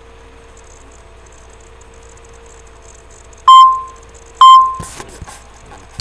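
Two loud electronic beeps of the same pitch about a second apart, each cutting in sharply and fading quickly, followed by a few clicks and knocks of handling. A faint steady electrical hum runs underneath.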